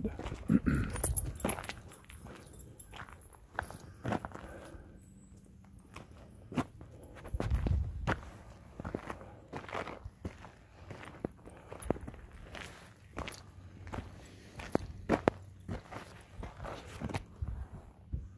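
Footsteps of a person walking: a long string of irregular short steps.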